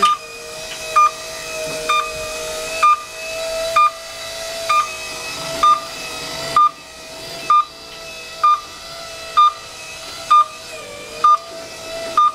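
Snorkel Wildcat SL15 battery-electric scissor lift driving: its motion alarm beeps about once a second over a steady, hissy electric drive motor whine.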